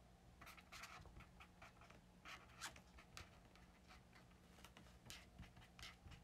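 Faint pen strokes scratching on paper, short and irregular, as someone writes and draws. A faint steady low hum runs underneath.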